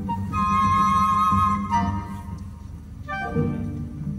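Live orchestra playing. A high solo melody line holds a long note, then steps down over a steady low accompaniment. It softens about three seconds in, and lower notes come in near the end.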